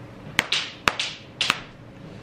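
Cloth kitchen towels being pulled apart and shaken out: three sharp snaps, each with a brief rustle of fabric, about half a second apart.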